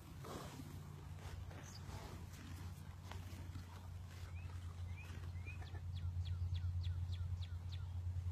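Small birds chirping: a few rising chirps around the middle, then a quick run of about four short chirps a second near the end, over a steady low hum.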